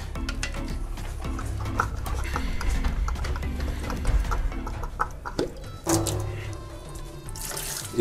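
Light clicks and knocks from a plastic reverse-osmosis filter housing being unscrewed and lifted off, with a splash of water starting near the end as the bowl comes away. Background music plays throughout.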